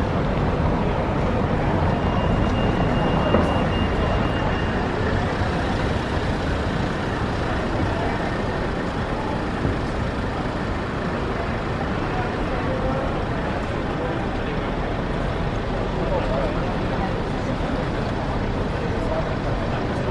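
Busy city street ambience: a steady wash of traffic noise with the voices of passing crowds mixed in.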